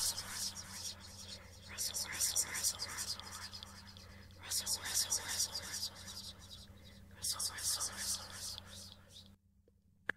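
A woman whispering a breathy, repeated 'rustle, rustle' as a vocal sound effect for something moving through grass, in bursts a couple of seconds apart over a steady low electrical hum. It stops shortly before the end.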